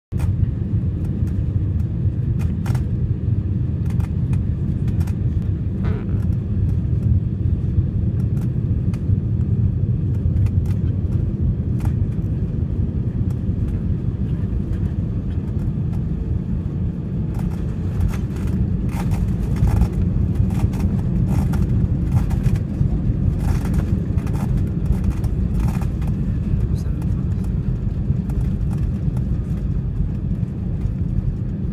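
Jet airliner cabin noise on landing: a steady low rumble of engines and airflow as the plane comes in over the runway and rolls out. From a little past halfway, frequent short knocks and rattles sound through it as the aircraft runs along the runway.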